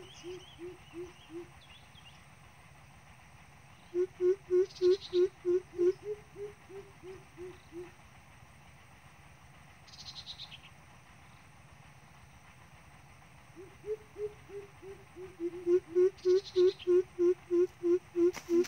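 Coucal hooting: series of deep, evenly spaced hoots at about four a second. One series trails off just after the start, another runs from about four to eight seconds in, and a longer one builds from about fourteen seconds to the end.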